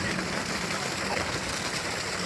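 A 2 HP DC monoblock solar surface water pump running steadily off its solar panels: a low motor hum under an even rushing hiss.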